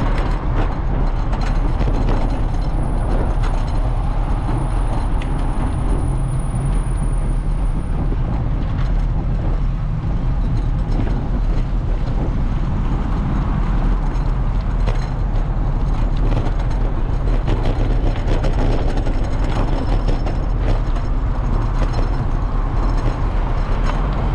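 Steady low wind rumble on the microphone of a bicycle-mounted camera while riding, mixed with tyre and road noise and the sound of motor traffic on the street, with occasional short knocks from bumps in the pavement.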